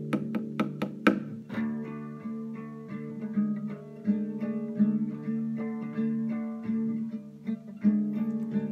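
Classical guitar played on its own: a quick run of plucked notes in the first second, then picked notes ringing over a sustained bass line.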